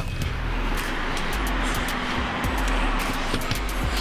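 Road traffic on a city street, cars going by in a steady wash of noise with a low rumble, under background music.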